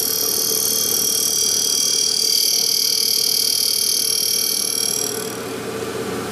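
Abrasive Machine Tool Co. 3B surface grinder's 12-inch wheel grinding a steel knife blade on a hand-fed pass, a steady high hiss over the hum of the running spindle. It is a heavy cut, about 10 to 15 thousandths of an inch deep. The grinding hiss fades out about five seconds in as the blade clears the wheel, and the spindle hum runs on.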